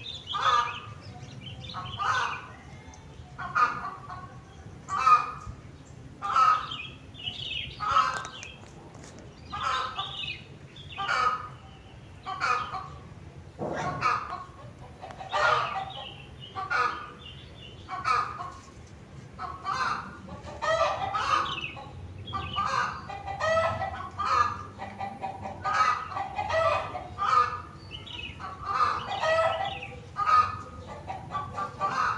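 Fowl calling over and over, one short call every second or so, with calls crowding and overlapping more in the second half.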